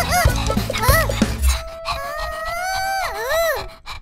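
Cartoon soundtrack: light background music, then about a second and a half in a long, drawn-out vocal sound that rises, holds and ends in two wavering swoops.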